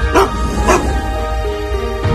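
Two dog barks about half a second apart, laid over intro theme music that carries on under them.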